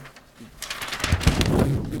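Sheets of paper being handled close to a table microphone: a run of rustling and soft bumps starting about half a second in.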